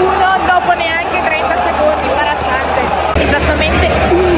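A woman talking over the steady murmur of a seated stadium crowd.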